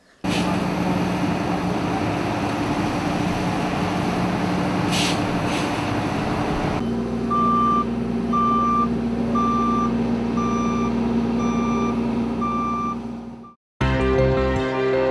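Heavy road-works machinery running steadily with a low diesel engine hum. In the second half, a road roller's engine runs with its reversing alarm beeping about once a second.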